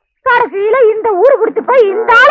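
A high-pitched voice singing a sliding, wavering melodic line, starting after a brief silence at the very start.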